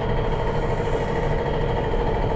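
A machine running steadily in the background: a constant, even hum with a held mid-pitched tone that does not change.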